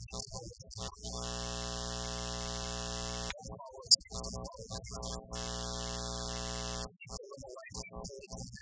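Electronic keyboard holding a steady chord twice, each about two seconds long, with a man's voice in between and a short sharp click just after the first chord.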